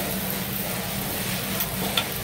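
Meat and seafood sizzling on a tabletop barbecue grill over a steady low hum, with a short click near the end.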